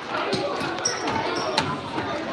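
Children's voices in the background of a large echoing hall, with a couple of short dull thuds, one just after the start and one about a second and a half in.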